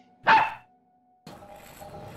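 A dog barks once, a single short bark about a quarter of a second in, followed by faint outdoor background from just past the middle.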